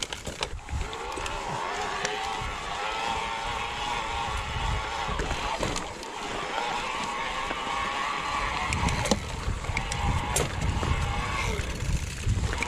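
An e-bike's drive motor whines as the rider pedals, its pitch drifting up and down, in two long stretches about a second and a half apart. Under it, the tyres crunch and rattle over a gravel track, with a low rumble of wind on the microphone that grows stronger in the second half.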